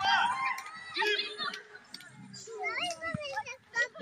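Children shouting and calling out to each other while playing football, with a few short knocks in between.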